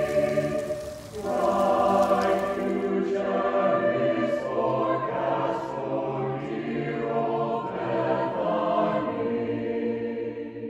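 A choir singing slow, sustained chords, with a short break between phrases about a second in.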